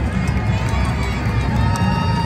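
Street-parade ambience: a steady low rumble with crowd voices, and a few sharp clops of horses' hooves on the pavement as a mounted unit walks past.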